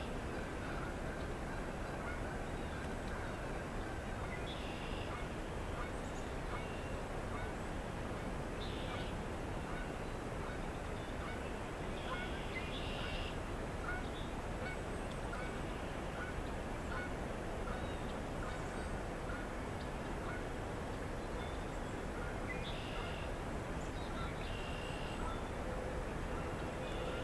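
Distant bird calls repeating every few seconds over a steady outdoor background noise.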